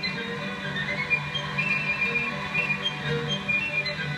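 Instrumental music from a television broadcast, heard through the TV's speaker: a moving high melody over a steady low accompaniment.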